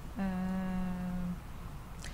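A woman's drawn-out hesitation "uh", held on one steady pitch for about a second, then a pause with only faint room background.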